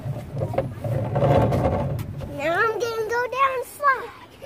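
A young child's wordless, high-pitched vocalising that glides up and down, in the second half. It comes after about two seconds of loud rustling noise.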